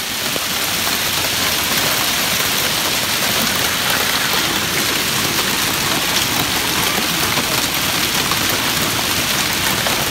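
Hail mixed with heavy rain pelting pavement and parked vehicles: a steady, dense clatter of many small impacts over a rushing hiss.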